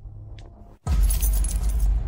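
Keys on a ring jingling, a bright metallic jangle that starts suddenly just under a second in and lasts about a second. It comes together with a sudden deep bass hit in the background music.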